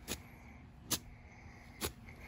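Golf club swung down into tall grass again and again, three quick faint swishing chops about a second apart.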